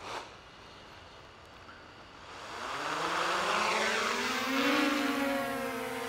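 DJI Mavic Pro quadcopter's propellers spinning up for takeoff: a buzzing whine that rises in pitch and loudness from about two and a half seconds in, then holds steady as the drone lifts off.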